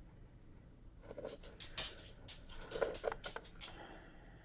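Light plastic clicks and scrapes, starting about a second in and coming in a quick irregular run: a clear plastic cup being shifted against a plastic enclosure and its artificial plant.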